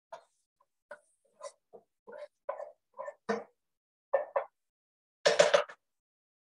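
Spatula pushing mushrooms across a frying pan to split it into two sections, in a run of short, separate scrapes, with a louder, longer scrape about five seconds in.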